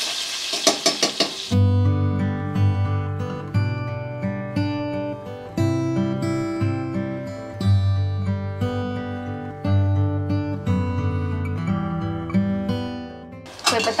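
Food sizzling in a pot with a ladle stirring for the first second and a half, then instrumental background music, a melody of plucked notes, that stops shortly before the end.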